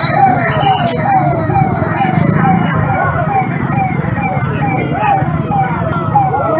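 A siren sounding in a quick repeating pattern: each note slides down in pitch and jumps back up, about twice a second, over the voices of a crowd.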